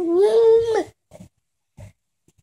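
An infant's drawn-out vocal sound, about a second long, held at a high steady pitch and dropping away at the end, followed by a couple of faint short sounds.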